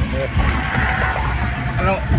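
Steady low road and engine rumble heard from inside a moving car's cabin on the highway, with brief snatches of voices about a quarter second in and again near the end.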